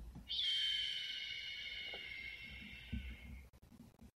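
A high, shrill sound that starts suddenly and fades away over about three seconds, its pitch sliding slightly down.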